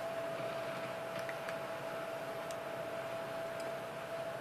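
Room tone: a steady hiss with a faint, constant hum at one pitch, and a couple of faint ticks.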